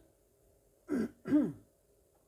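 A man clearing his throat: two short bursts about a second in, the second the louder.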